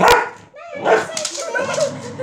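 A sharp crack at the very start, then a dog giving short, high yips.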